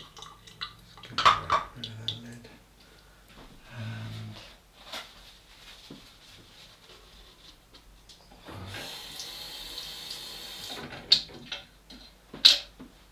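Tap water running into a sink, steady for about two seconds near the end, with sharp clicks and knocks of handling before and after.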